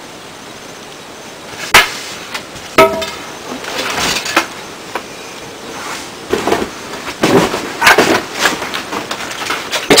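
A few sharp knocks amid irregular rustling, the two clearest knocks about two and three seconds in.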